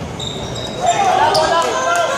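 Basketball game on a gym's hardwood court: a brief high squeak of a sneaker on the floor early on, then players' voices calling out from about a second in, with a few sharp taps and squeaks echoing in the hall.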